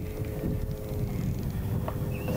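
Wind buffeting the microphone over open water, with a steady two-tone hum from a boat's outboard motor running underneath. There is a short knock right at the start.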